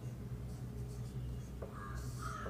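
Marker pen writing on a whiteboard, faint strokes over a steady low hum. A crow starts cawing in the background near the end.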